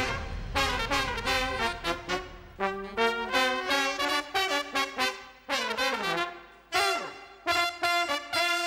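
Brass band of trumpets, trombone and saxophones playing a jazzy, punchy passage of short, clipped notes. A few notes fall away in pitch about six seconds in.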